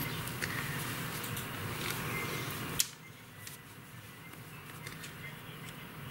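Faint clicking of knitting needles and rustling of a wool shawl being handled. A sharp click comes about three seconds in, after which the sound drops quieter.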